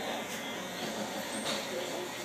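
Steady noise with faint background voices, and two brief soft sounds about a third of a second and a second and a half in.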